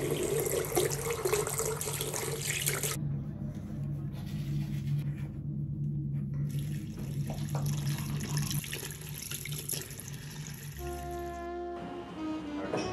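Water running from a tap into a bathroom sink basin. It stops about three seconds in and runs again from about six and a half seconds. Music comes in near the end.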